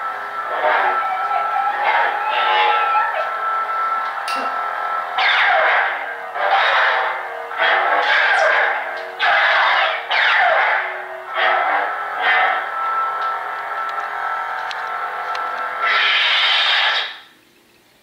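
Lightsaber sound module: a steady buzzing hum broken by louder swooshes about a second long as the blade is swung, several in a row after about five seconds and one more near the end. The sound then cuts off sharply as the blade shuts off.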